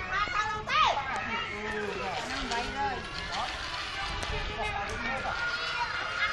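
Several young children's voices calling, shouting and chattering at once as they play outdoors, with a sharp high squeal a little under a second in.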